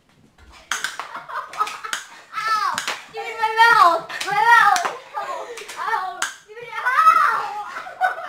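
A boy yelling without words, loudest in the middle and near the end, mixed with a series of sharp snaps from spring airsoft pistols being fired during a game.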